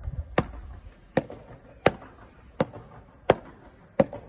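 A small ball volleyed back and forth with frying pans, each hit a sharp metallic ping with a short ring, about every 0.7 s. The hits alternate loud and fainter, the near pan and the far one.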